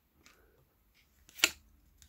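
Trading cards handled and flipped through by hand: faint rustles, then one sharp card snap about one and a half seconds in.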